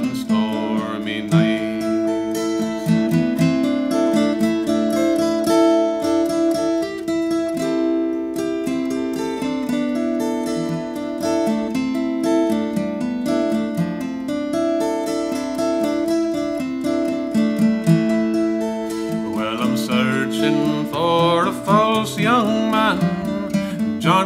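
Acoustic guitar playing a picked instrumental passage between verses of a folk ballad. A man's singing voice ends a line in the first second or so and comes back in about twenty seconds in, over the guitar.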